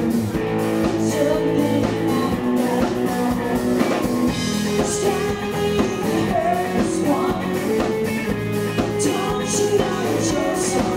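Live rock band playing: a woman singing over electric guitar, bass guitar and drum kit with cymbals.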